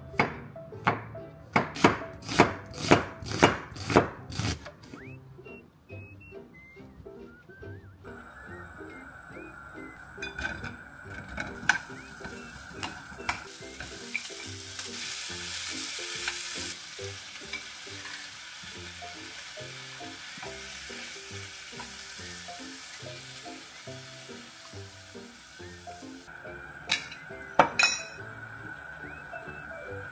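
A knife slicing button mushrooms on a wooden cutting board, about two strokes a second for the first few seconds. Then onion and ham sizzling in a frying pan as they are stirred, loudest about halfway through, with a few clicks of the utensil against the pan near the end. Soft background music plays throughout.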